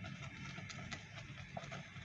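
Faint, sparse clicks and light knocks of a spoon in an enamel pot of thickening milk pudding, over a low steady hum.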